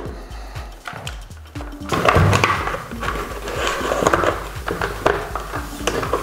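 Plastic clicks and rubbing as an LED headlamp is pushed and clipped onto the front of a Milwaukee Bolt 200 hard hat, over steady background music; the handling gets louder about two seconds in.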